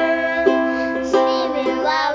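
Ukulele strummed in a steady rhythm, about two strums a second, under a woman and children singing together.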